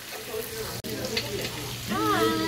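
Duck meat sizzling on a stone tabletop grill while metal tongs stir it. The sound cuts out for an instant about halfway, and a person's voice starts near the end.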